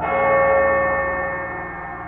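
Dark ambient music: a single bell-like metallic strike right at the start, ringing out and fading over about a second and a half, over a low sustained drone.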